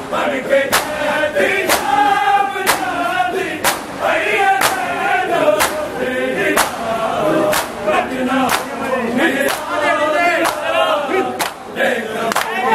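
Men chanting a Shia nauha (mourning lament) in unison while a crowd of mourners beats their chests in time (matam), with one loud, sharp collective slap about every second.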